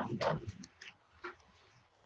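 A short voice-like sound at the very start, then a few faint knocks and clicks of objects being handled on a table.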